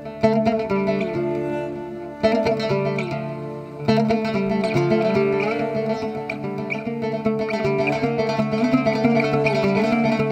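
Acoustic Greek folk ensemble playing an instrumental tune: lavta and acoustic guitar plucking the melody over a double bass played with a bow. Three strong accented entries come about a fifth of a second, two seconds and four seconds in, after which the melody runs on steadily.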